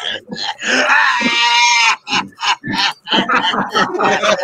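A man's voice lets out a long held wail, lasting about a second, then breaks into choppy bursts of laughter.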